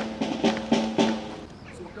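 Marching drum beating a steady marching rhythm, several ringing strikes a second apart or less, dying away in the last half second.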